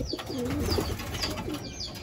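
Racing pigeons cooing in their loft: several soft, low coos overlapping in the first second and again later, with a few short high chirps.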